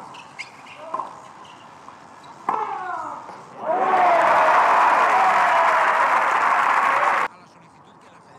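Tennis rally: racket strikes on the ball with a player's short grunts, about a second in and again at about two and a half seconds. Then a crowd applauding and cheering for a won point, with one voice shouting over it, for about three and a half seconds before it cuts off suddenly.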